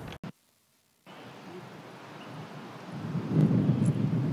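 Outdoor ambience with wind rumbling on the microphone, cut off briefly near the start by an edit and gusting louder in the last second.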